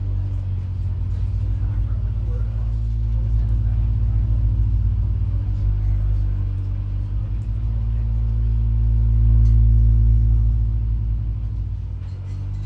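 Live electronic drone music: a deep, steady synthesizer drone with a pulsing low end and held tones above it. It swells to its loudest about nine to ten seconds in, then eases off.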